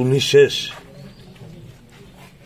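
A man's voice in a short, wavering utterance during the first half second or so, then faint background murmur.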